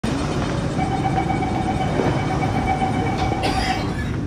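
Downtown Line C951A metro train running, heard from inside the car: a steady rumble with a steady high whine that stops just before the end, overlapped by a short burst of noise.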